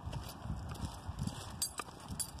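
Footsteps of a walker and a leashed dog on a concrete sidewalk: irregular low thuds, with a few light clicks near the end.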